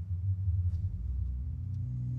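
Low rumbling drone with faint ticking about once a second; sustained musical tones swell in near the end.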